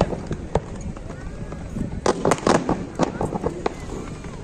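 Fireworks display: a rapid run of sharp bangs and crackles, in a cluster at the start and a denser one from about two seconds in until near the end.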